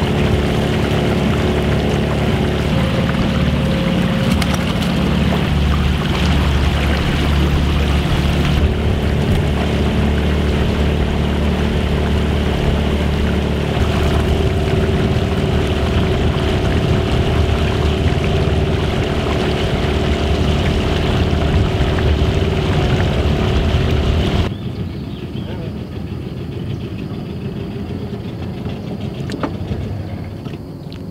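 Small outboard motor on a wooden fishing boat running steadily under way. About three quarters of the way through, the sound drops sharply to a much quieter background.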